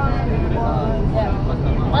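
Moving bus heard from inside the cabin: a steady low rumble of engine and road noise, with people talking over it.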